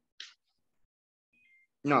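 Mostly silence on a noise-gated call line, broken by a brief hiss about a fifth of a second in and a faint thin tone past the middle; near the end a voice says 'No.'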